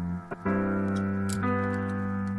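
Lofi hip hop instrumental: mellow sustained chords, with a brief drop-out and a new chord coming in about half a second in, over faint high ticks.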